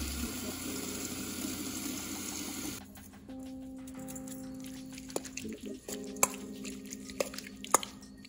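Kitchen tap water running into a stainless steel bowl of rinsed shrimp and splashing off into the sink, stopping abruptly about three seconds in. After that, soft background music with a few sharp clinks of a spoon against the steel bowl as the seasoned shrimp is mixed.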